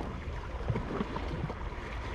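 Small sea waves lapping and sloshing against a rocky shore, with a few short irregular splashes over a steady low rumble.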